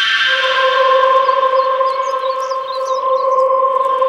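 A steady held electronic drone note of background score, starting just after the beginning and holding flat, with a few faint high bird-like chirps in the middle.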